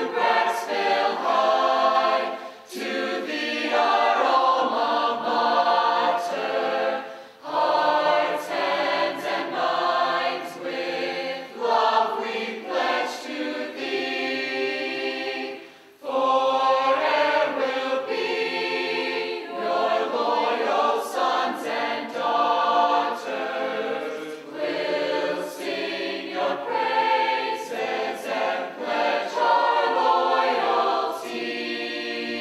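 A mixed high-school choir of boys and girls singing the school's alma mater. The song comes in phrase by phrase, with brief breaks between lines.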